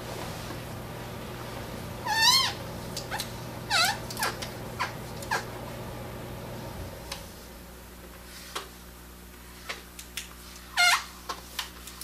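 Three short, high, wavering animal calls: one about two seconds in, one near four seconds, and one falling call near eleven seconds. Faint light ticks sound in between, and a low steady hum stops about halfway through.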